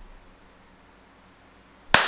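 A single loud hand clap near the end, with a short ringing decay, made to trigger the sampler's recording; before it only faint room tone.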